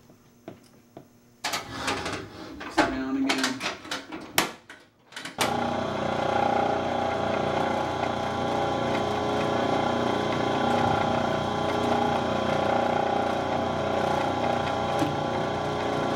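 Clicks and knocks of a milling machine being tightened up. About five seconds in, the machine starts and runs steadily at its slowest speed, a steady hum with several held tones, as a large spiral bit cuts a hole in metal flat bar.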